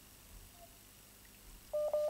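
Near silence on the call line, then a short steady electronic beep near the end: a telephone-style call tone.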